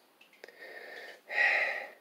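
A man breathing close to the microphone: a faint click, then two breaths, the second louder, about a second and a half in.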